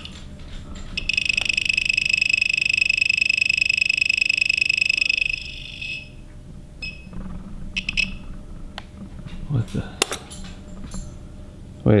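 Handheld RF detector's alarm sounding a high-pitched, rapidly pulsing electronic tone for about four seconds, signalling a detected radio signal. The tone cuts off suddenly and a couple of brief beeps follow.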